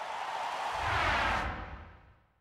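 Logo sound effect: a noisy whoosh with a low rumble coming in under it, then fading out.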